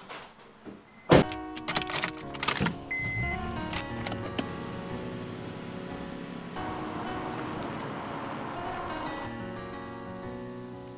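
Music comes in suddenly about a second in with a loud hit and several sharp strikes, then settles into held tones. Beneath it, a car engine starts and runs.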